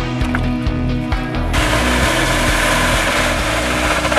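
Background music, which about a third of the way in gives way to a loud, steady rushing hiss with a low hum beneath. This is a vacuum hose sucking liquid out of a saturated septic drain line.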